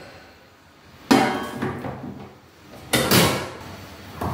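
Stainless-steel water storage tank being set into its purifier housing: two metallic clunks, one about a second in and a louder one near three seconds, each dying away briefly.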